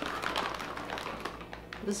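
Plastic bag of dried soy curls crinkling and rustling as a hand rummages inside it, with small irregular ticks.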